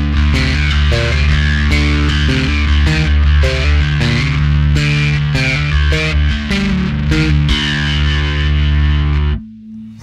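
Electric bass played through a flanger pedal, split into a clean amp and a distorted amp, giving a zingy, sitar-like tone over sustained notes and a steady low drone. The playing stops abruptly about nine and a half seconds in.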